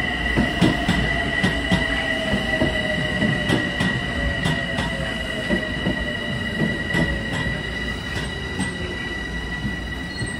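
Metro-North M7A electric multiple-unit train rolling past slowly, its wheels clicking irregularly over rail joints. A steady high-pitched squeal sounds throughout, with a lower motor whine that falls gradually in pitch as the train slows.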